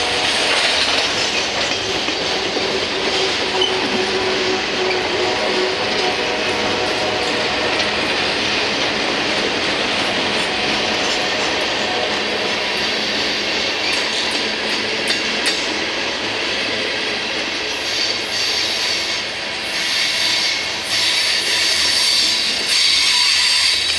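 Freight cars of a passing Norfolk Southern train rolling by at close range: covered hoppers, a gondola and a tank car. A steady rumble and rattle of steel wheels on rail runs throughout, with sharp clicks over the rail joints coming more often in the second half.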